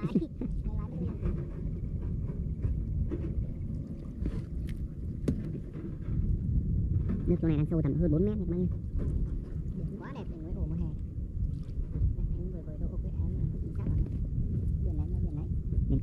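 Wind buffeting the microphone, a low rumble throughout, with muffled voices talking briefly around the middle.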